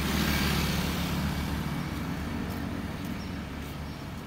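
Road traffic: a motor vehicle's low engine rumble, loudest at first and slowly fading.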